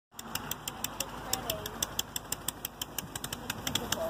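Gas walk-behind push mower engine running steadily as it is pushed across grass, with a regular run of sharp ticks, about six a second.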